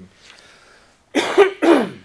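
A man coughs twice, two loud coughs about half a second apart, each falling in pitch.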